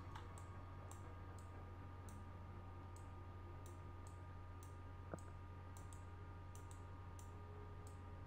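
Faint clicks from computer controls at irregular intervals, roughly two a second, heard while a 3D model is being worked on in ZBrush. A steady low hum runs underneath.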